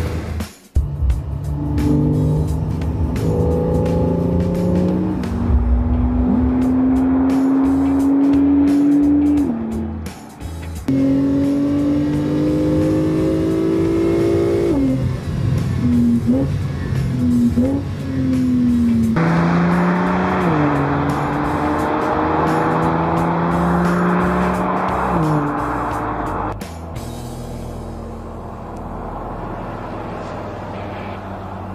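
Porsche 911 Targa 4 GTS six-cylinder boxer engine accelerating through the gears, its note climbing and then dropping at each upshift, several shifts in a row.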